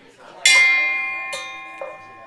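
A bell struck once, ringing with several clear tones that slowly fade. Two lighter knocks follow near the end. It is rung to open the meeting.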